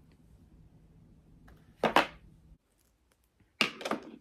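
Two short handling noises about a second and a half apart, over a faint steady room hum that cuts off suddenly between them at an edit.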